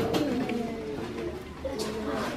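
Soft children's voices with a held hummed note, fading somewhat in the second half.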